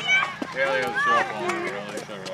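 People talking close to the microphone in fairly high-pitched voices, with a single sharp knock about half a second in.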